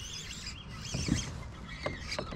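Faint bird chirping in the background, with a few light clicks about a second in and near the end.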